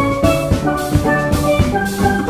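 Steel pan music: bright, quickly struck steelpan melody notes over a steady drum beat and bass.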